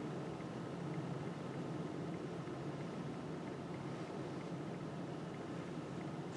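Steady room tone of a lecture room: a low ventilation hum under an even hiss, with no distinct events.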